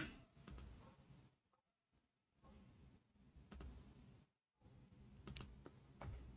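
Near silence broken by a few faint, widely spaced clicks from computer mouse or keyboard use, just after a cough at the very start.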